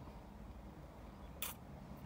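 Low, steady background noise with one brief hiss about one and a half seconds in.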